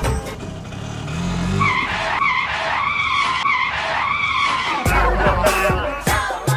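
A vehicle tyre-screech effect: a wavering squeal lasting about three seconds, under background music, followed by louder low rumbling and knocks near the end.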